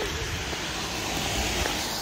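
Car tyres on a rain-wet road: a steady hiss over a low rumble.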